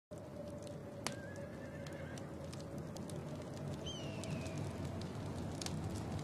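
Outdoor ambience with a steady low rumble and scattered faint ticks, and a distant horse whinnying once, a short high wavering call that falls away, about four seconds in.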